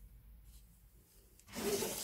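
Faint handling noise of cotton-gloved hands on a briar pipe, then a short, louder scrape near the end as a plastic pipe stand is moved on the table.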